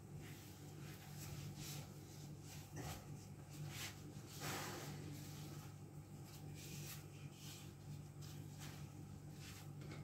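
Faint rustling and brushing of thin lavash flatbread being folded and rolled by hand, a few soft sounds spread through, over a steady low hum.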